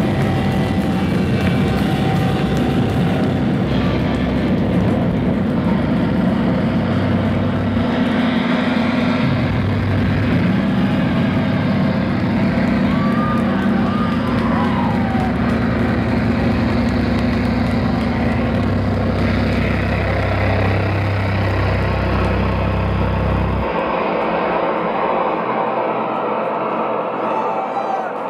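Live rock band at full volume, with distorted guitars, drums and held bass notes that change every few seconds, playing the end of a song. The band stops suddenly about 24 seconds in, leaving crowd noise with a few whistles.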